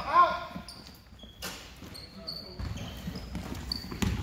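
Basketball being dribbled and bouncing on a hardwood gym floor during play. Several short, high sneaker squeaks come in the second half.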